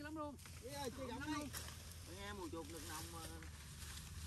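Faint voices of men talking some way off, with a low steady rumble underneath.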